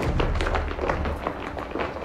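Footsteps of a group of booted soldiers walking on stone paving: many irregular, overlapping knocks. A low steady drone of background music runs underneath.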